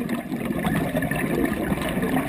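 Exhaled bubbles from a scuba regulator, a steady bubbling crackle, heard underwater through a camera housing.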